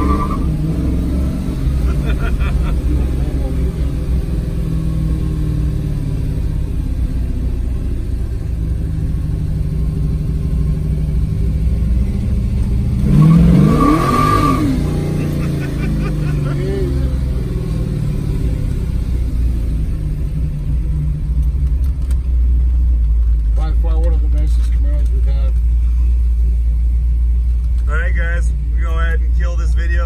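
The 1968 Camaro's 700-plus-horsepower carbureted V8 runs at low speed, heard from inside the cabin. About halfway through, a short burst of throttle rises in pitch and is the loudest moment.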